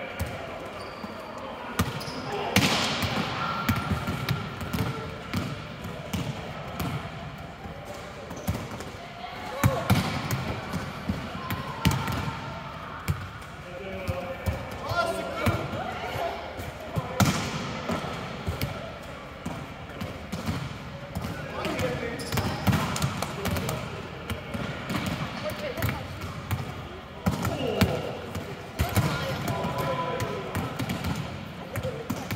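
Volleyballs being struck by hands and forearms and bouncing on a sports-hall floor, irregular smacks and thuds from several balls at once, over the voices of players calling and chatting, echoing in a large hall.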